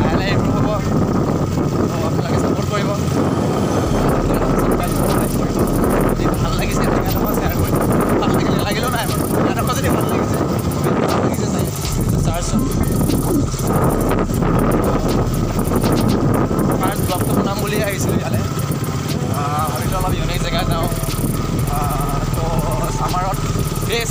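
A motorcycle running on the move, its engine under a steady rumble of wind buffeting the microphone.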